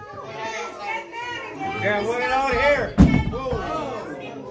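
Spectators shouting, then about three seconds in a single heavy thud as the wrestlers' bodies slam onto the matted wooden stage.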